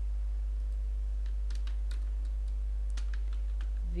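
Computer keyboard keys being typed in scattered, irregular clicks, over a steady low electrical hum.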